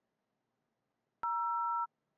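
Android emulator dialer playing the two-tone DTMF keypad tone for the zero key, held for about two-thirds of a second from a little over a second in as the key is long-pressed.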